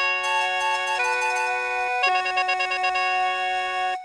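Khaen, the Isan bamboo free-reed mouth organ, playing a melody in sustained chords over a steady drone note. About two seconds in the notes break off briefly, then come back as a quick run of repeated notes.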